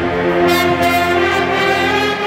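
Pep band with brass and drumline playing, the brass holding loud sustained chords, with cymbal crashes about half a second in.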